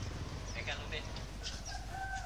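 Rooster crowing: one long, level call that starts about one and a half seconds in, over a steady low background rumble.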